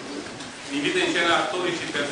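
A man's voice speaking aloud, beginning partway into the moment, in a fairly high, drawn-out pitch.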